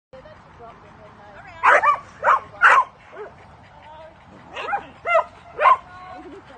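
A dog barking in two runs of short, loud barks: about four close together around two seconds in, then three more near the end.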